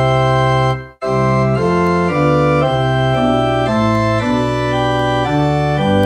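Church organ playing a hymn in sustained chords that change every half second or so, with a brief break between phrases about a second in.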